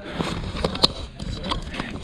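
Indistinct voices with a low rumble and a few sharp clicks, the loudest a little under a second in.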